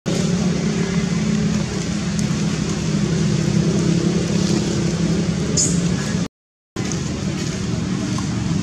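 A steady, loud motor drone, broken by half a second of dead silence about six seconds in.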